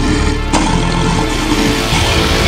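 Riddim dubstep track: dense, heavy synth bass with a sharp hit about half a second in.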